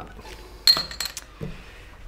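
A metal crown bottle cap landing on a wooden tabletop: one sharp clink with a brief high ring about two-thirds of a second in, followed by a few lighter ticks.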